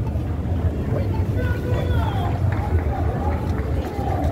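Busy city street noise: a steady low traffic rumble with indistinct voices of passers-by.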